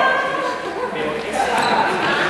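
Players' voices calling and shouting over running footsteps and shoe noise on a sports-hall floor, echoing in the large hall.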